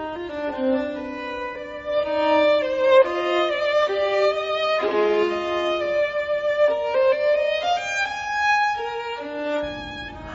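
Background music: a bowed string instrument playing a slow melody of long held notes, some gliding between pitches.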